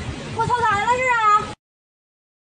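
Wind buffeting the microphone, then a high-pitched voice cries out for about a second, its pitch wavering up and down; the sound cuts off abruptly near the end.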